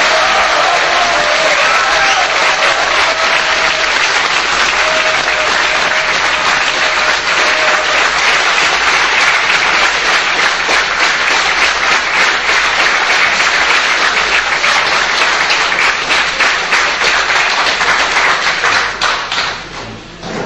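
Audience applauding steadily, then dying away near the end.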